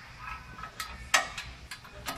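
Steel flip-out grill arm on a camper's rear bumper being set in place: a few sharp metal clicks and clinks from its locking pin and latch, the loudest just after a second in.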